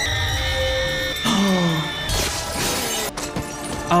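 Movie soundtrack: dramatic music with held high tones and falling glides, over crashing and shattering effects, with a noisy crash about two seconds in and a sharp crack near three seconds.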